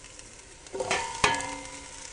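Onions frying in butter in a pot, a faint sizzle, with a single sharp metallic clink a little past a second in that rings briefly.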